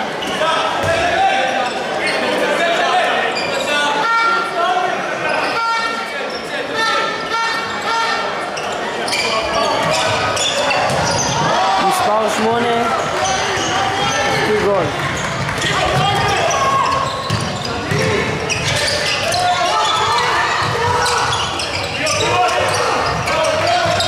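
A handball bouncing and being caught and thrown on a wooden indoor court, with players' voices calling out, in a large sports hall.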